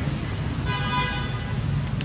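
A short, flat-pitched horn toot, about half a second long, a little under a second in, over a steady low rumble.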